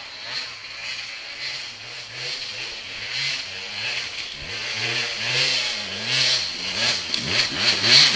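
Off-road dirt bike engine revving up and down over and over, getting steadily louder as the bike climbs the trail toward the listener, loudest near the end.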